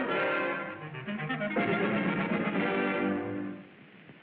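Orchestral cartoon score music with brass to the fore, playing sustained chords that swell again about one and a half seconds in and fade away near the end.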